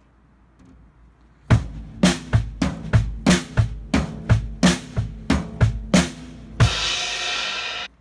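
Acoustic drum kit played with sticks: a steady run of drum hits, about three a second, that ends on a cymbal crash ringing for about a second before it cuts off suddenly.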